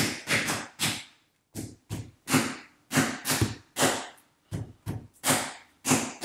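A quick series of short, sharp clicks or taps, about three a second, broken by a couple of brief pauses.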